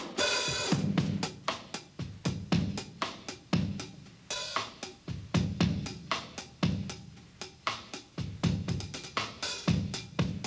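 Acoustic drum kit played alone: a steady groove of hi-hat and snare strokes with bass drum accents, in a 3/4 feel leaning toward 6/8. Cymbal crashes ring at the start, about four seconds in, and near the end.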